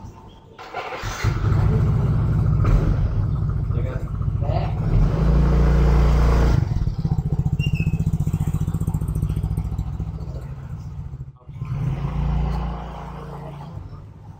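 Motorcycle engine starting about a second in and running, louder for the first several seconds and then settling to a quieter, evenly pulsing idle, with a brief break near the end.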